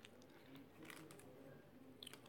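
Near silence: room tone with a few faint clicks from a plastic food tub being handled.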